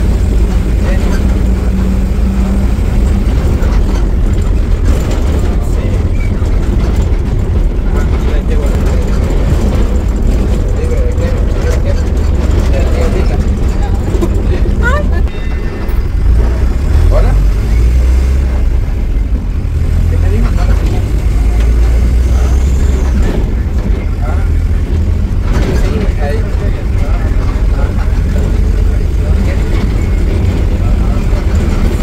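Bus running on the road, heard from inside the cabin: a loud, steady low rumble of engine and road noise, with a brief dip about halfway through.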